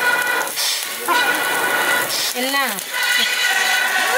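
Buffalo-meat skewers sizzling over charcoal embers, a steady hiss under background music of long held notes. A voice calls out briefly about halfway through.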